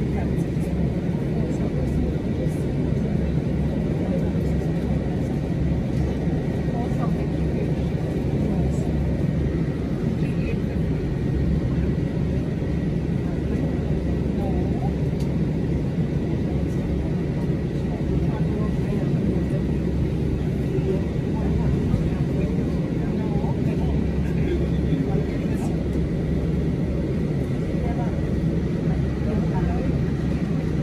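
Boeing 787 Dreamliner's jet engines at taxi power, a steady low rumble heard through terminal window glass.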